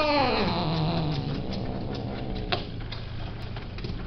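Long-haired male cat yowling: a long drawn-out call that falls and trails off low in the first second and a half, followed by fainter calls. A single sharp knock comes a little past halfway.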